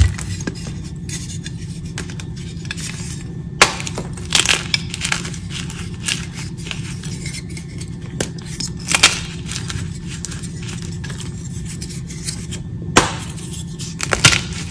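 Blocks of gym chalk (magnesium carbonate) being crushed and crumbled by hand: a few sharp cracks as pieces snap, loudest about four, nine and thirteen seconds in, with softer crunching and crackle between them. A steady low hum runs underneath.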